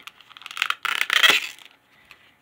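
Thin plastic clamshell pack of Scentsy wax bars crinkling and clicking as it is handled and flexed open, loudest about a second in.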